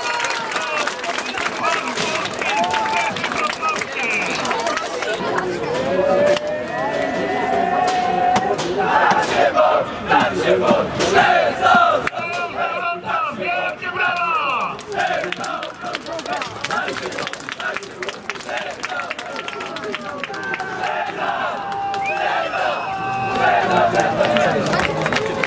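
A group of footballers shouting and chanting together in a victory huddle after a cup-final win, with many voices at once and sharp claps throughout.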